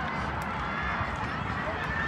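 Indistinct chatter of several voices, with no clear words, over a steady low rumble.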